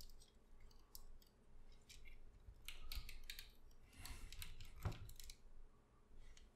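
Faint, scattered clicks and ticks of the plastic parts of a Transformers Masterpiece MP-44 Convoy figure being rotated and shifted by hand during its transformation, with a quick run of clicks near the middle and another about four to five seconds in.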